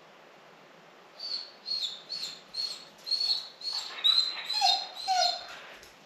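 Golden retriever whining at the door: a run of short, high-pitched whimpers, about two a second, starting about a second in and growing louder, with a couple of lower whines near the end. It is the distress whining of a dog left alone in the house by its owners for the first time.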